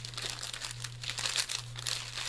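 Thin clear plastic document sleeve crinkling and crackling as it is handled and spread open by hand, in quick irregular little crackles, over a low steady hum.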